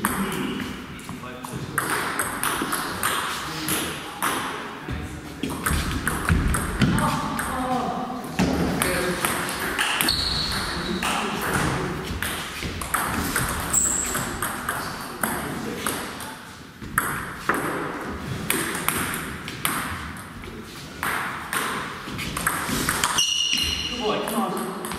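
Table tennis ball clicking off bats and the table over and over through rallies, in a hall with some echo. Voices can be heard in the background.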